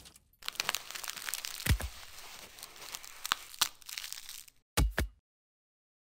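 Ear-cleaning ASMR sound effect: a dense crackling, crunching rustle with several sharp clicks, ending in a short low thump about five seconds in.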